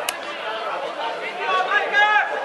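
Several people talking and calling out at a distance, with one sharp knock just after the start.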